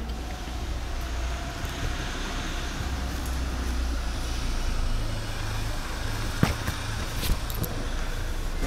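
A steady low rumble with a faint hiss, and two sharp clicks about a second apart near the end.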